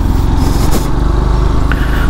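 A motorcycle engine running under way, mixed with low wind rumble on a helmet-mounted microphone, growing slightly louder.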